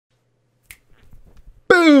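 A short click and a few faint ticks, then a man loudly exclaims a drawn-out "boom" whose pitch slides steadily downward.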